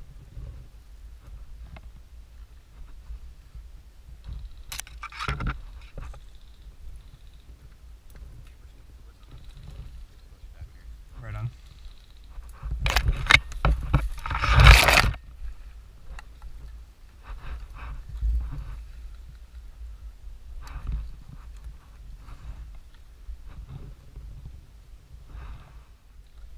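Dry brush and branches scraping and rustling against a helmet-mounted camera and gear while pushing through scrub, over a low rumble of wind and handling on the microphone. The scraping comes in a few louder spells, the loudest a little past the middle.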